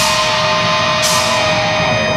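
Heavy metal band playing live: distorted electric guitar over a held note, with two cymbal crashes about a second apart.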